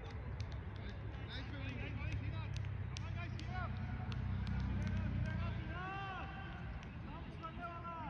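Distant, indistinct voices of cricket players calling across an open field. A low rumble swells through the middle and fades about six seconds in.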